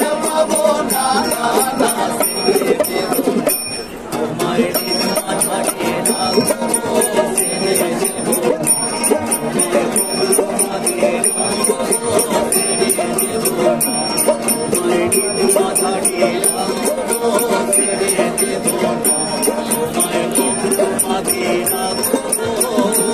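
Two ukuleles strummed in a brisk, even rhythm with sharp jingly ticks on the beat, accompanying voices singing a Bengali folk song.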